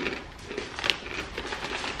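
Crunchy granola being chewed: faint, scattered crunches with one sharper crunch about a second in.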